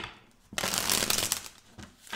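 A deck of tarot cards being shuffled by hand: a short tap at the start, then a dense rustle of cards sliding over one another for about a second, beginning half a second in and fading out.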